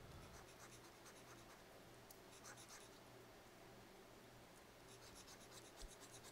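Near silence: room tone with a low steady hum and faint, scattered scratching.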